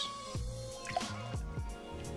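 Lime juice dripping and trickling from a steel jigger into a stainless-steel cocktail shaker tin, a few small splashes, over steady background music.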